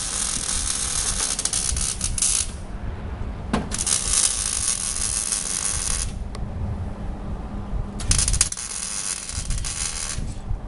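Harsh mechanical ratcheting rattle in three bursts of two to three seconds each, from tool work on a metal sculpture made of bicycle frames.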